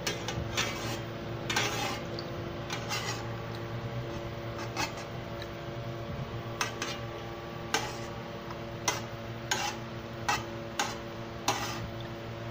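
Metal spoon clinking and scraping against an aluminium pan of water, about a dozen separate knocks at irregular intervals, over a steady low hum.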